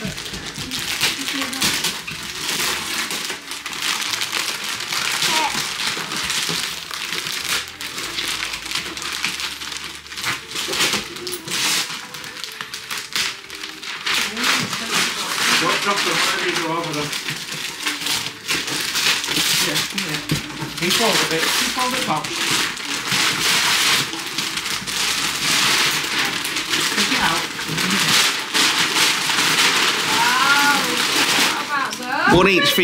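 Foil and paper gift wrap being ripped and crinkled off two large boxes, a near-continuous run of tearing and rustling with many sharp rips.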